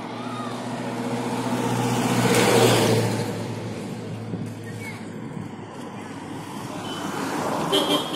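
A jeep's engine running as it drives up and passes close by, growing louder to a peak about two and a half seconds in and then fading away.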